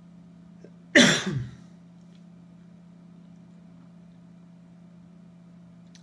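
A man coughs once, loudly and abruptly, about a second in, the sound falling in pitch as it dies away over half a second. He has a really bad cold.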